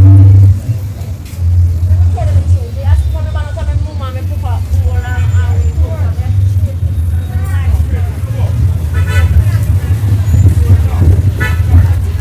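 Street market ambience: people's voices on and off over passing traffic, with a loud steady low rumble throughout.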